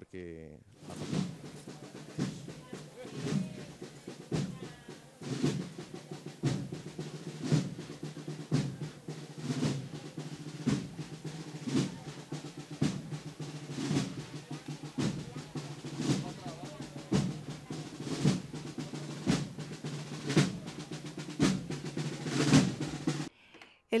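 Municipal wind band playing a Spanish processional march: sustained brass and woodwind chords over a steady bass drum beat and snare drum rolls. The music stops just before the end.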